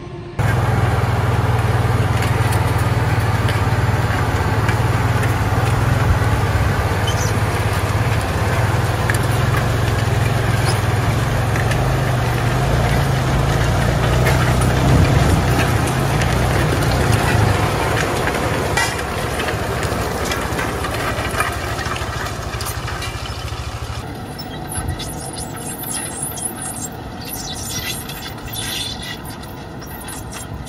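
John Deere tractor engine running with a heavy, steady low rumble, easing off after about eighteen seconds. In the last few seconds the engine is quieter, with scratchy rustling over it.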